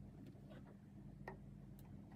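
Near silence: room tone with a low steady hum and two faint clicks, about half a second and about a second and a quarter in.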